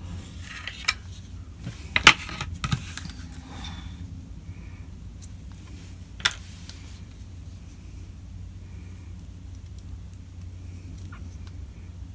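Snips and plastic clicks of a small cutter freeing a folding knife from its blister-card packaging, with light rustling, the loudest snap about two seconds in. A single sharp click follows about six seconds in.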